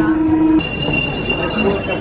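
Paris Métro train, a steady low electric tone that cuts off suddenly about half a second in, followed by a high steady whine with voices.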